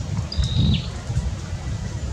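A bird's single short high chirp about half a second in, dropping in pitch at its end, over a steady low rumble.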